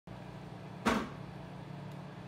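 Proctor Silex microwave oven running with a steady low hum. A single sharp knock, the loudest sound, comes just under a second in.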